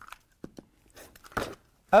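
A few short crunches and knocks, the sharpest about one and a half seconds in: a rotary cutter and an acrylic quilting ruler being handled on a cutting mat.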